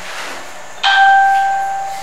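A single bell-like ding a little before halfway through: one clear tone with a fainter overtone above it, struck suddenly and then ringing on and fading slowly.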